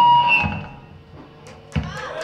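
Live rock band of electric guitars, bass and drums ending a song: the final chord rings with a held high note and stops about half a second in. After a quiet stretch comes a single thump near the end.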